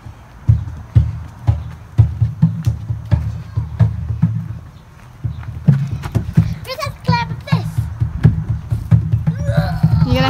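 Irregular knocks and thumps of a child climbing on plastic playground equipment, heard over a low rumble of wind on the microphone. There is a short pause about halfway through, and a brief voice near the end.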